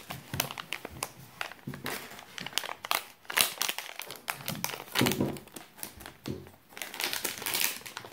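A plastic mystery-pack wrapper being handled and torn open, crinkling with irregular crackles throughout.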